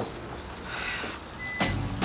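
Semi-truck rumbling low and steady, with one short high beep about three quarters of the way through and a sudden hit near the end.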